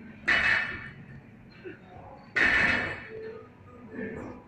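Barbell loaded with bumper plates set down on a rubber gym floor twice, about two seconds apart, at the bottom of each deadlift rep. Each touchdown is a sudden knock that rings briefly and dies away.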